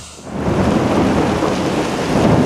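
Heavy rain pouring down on a street: a dense, steady rush with a deep rumble underneath, starting a moment in.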